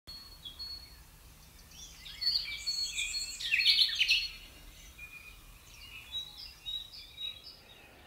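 Several songbirds chirping and singing, with overlapping notes at different pitches. The singing is densest and loudest about two to four seconds in, then thins to scattered short calls.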